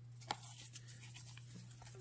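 Baseball cards being flicked and slid against each other in the hands: faint scattered clicks and rubbing, with a sharper click about a third of a second in, over a steady low hum.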